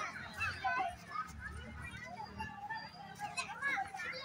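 Many children calling out and chattering at once while playing, their voices overlapping.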